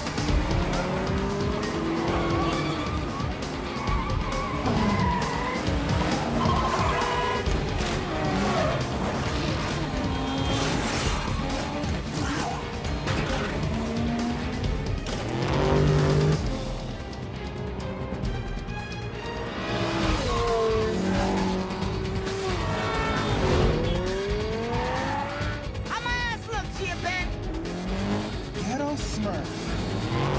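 Film sound mix of racing cars: several engines revving up and down through the gears and tyres squealing, over a music score.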